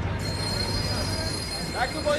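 Steel wheels of a passenger train squealing on the rails: a steady high-pitched squeal sets in just after the start and holds.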